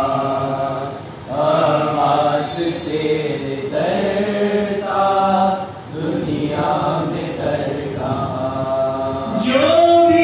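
Young men's voices chanting an Urdu manqabat in praise of Abbas without instruments: a lead voice with others joining, in long held phrases and a brief pause between lines. Near the end a new line starts, rising in pitch.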